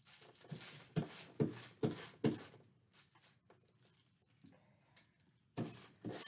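A loose plastic bag crinkling under hands as paper is pressed and glued on it. There are a few short, sharp crackles in the first two seconds, then softer scattered rustles and one more crackle near the end.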